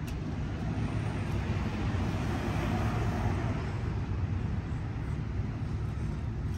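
Outdoor background noise: a steady low rumble with a hiss that swells about two to three seconds in and then fades.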